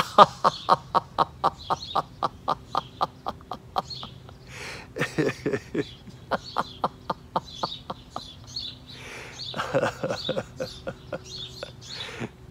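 A man laughing heartily as he lets out a held breath: a fast run of short staccato "ha" bursts, about five a second, that weakens over the first four seconds, followed by several shorter bouts of laughter.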